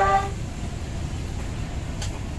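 Steady low rumbling background noise with no distinct events. A television advert's jingle ends just at the start.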